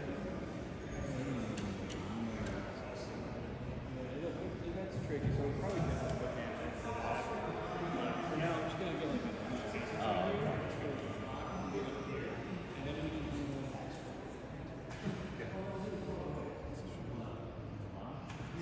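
Indistinct voices of several people talking, blurred together and echoing in a large rotunda.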